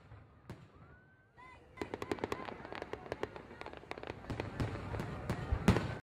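Fireworks: a faint rising whistle about a second in, then from about two seconds a dense run of crackling pops and bangs, loudest near the end.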